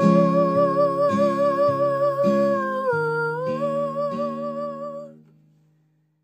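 The closing note of the song: a woman's voice holds one long wordless note with vibrato over an acoustic guitar playing chords. The note dips briefly and rises back. Both stop about five seconds in, and the last chord rings away to silence.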